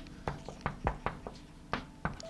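Chalk tapping against a blackboard while writing: about seven short, light taps at an uneven pace.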